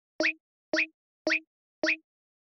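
Four identical short pop sound effects, evenly spaced about half a second apart, each with a quick upward sweep in pitch, separated by silence.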